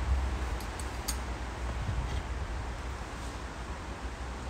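Metal skewer hooks giving a few faint clinks against the hanging ring on top of a Big Green Egg kamado as the skewers are hung in, within the first second or so, over a steady low background rumble.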